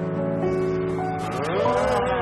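Closing bars of a live Israeli pop ballad: sustained keyboard chords, then, about halfway through, a male voice comes in singing one long note with a wavering pitch over them.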